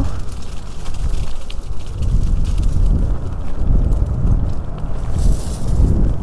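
Wind buffeting a helmet-mounted microphone as an electric scooter rides over a bumpy dirt trail, an uneven low rumble with the odd small knock.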